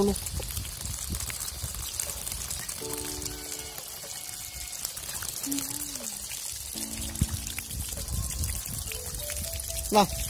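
A stream of running water pouring and splashing over a butterflied rainbow trout as hands rub and rinse the flesh clean.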